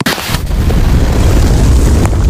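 Explosion sound effect: a sudden blast that goes straight into a loud, sustained rumble with heavy bass.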